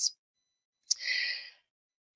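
A woman's audible intake of breath between phrases, about half a second long, starting with a small mouth click about a second in.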